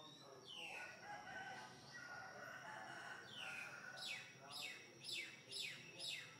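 Faint bird calls: a longer call through the middle, then a run of quick calls from about three seconds in, each falling in pitch, about two a second.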